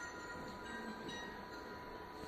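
Faint, sparse electronic instrument notes from an interactive projection music wall, a few short soft tones over a steady high hum.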